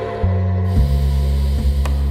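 Ambient meditation music with a low droning bass that pulses a little under once a second. Over it, a long hissing breath of about a second begins just under a second in, part of slow rhythmic guided breathing.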